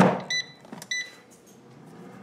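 Power AirFryer XL: a knock as the basket goes back in, then two short beeps about half a second apart from the control panel as ten more minutes of cooking time are set, and the fan starts with a low hum that slowly builds.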